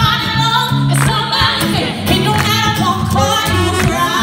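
Live band music with singing: sung lines that glide in pitch over steady bass notes and regular drum hits, recorded from the audience.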